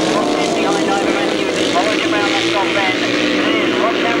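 Several racing sidecar outfits' engines running hard together, their overlapping notes rising and falling as the riders work the throttles through a bend.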